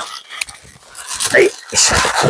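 Latex twisting balloon squeaking and rubbing as it is twisted into a bubble, with a short squeal about one and a half seconds in.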